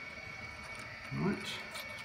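A man says "Right" about a second in, over a faint steady high-pitched whine in a small room; before that the background is quiet.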